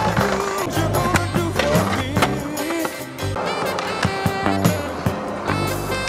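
A song with singing over a bass line and drums plays as the soundtrack, with sharp strikes through it that may include skateboard impacts.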